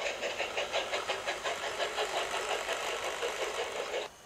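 Steam locomotive chuffing, a quick even run of puffs about five a second, for a small tank engine on the move.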